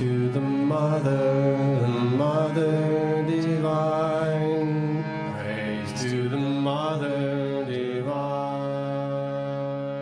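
Devotional mantra chant to the Divine Mother, sung as a melody that glides between long held notes over a steady low drone.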